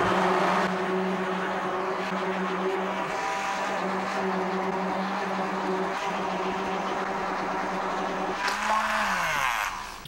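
Hand-held stick blender running steadily in thickening soap batter of olive oil and lye solution, its motor humming under the churning of the mix. Near the end it is switched off and the hum falls in pitch as the motor winds down.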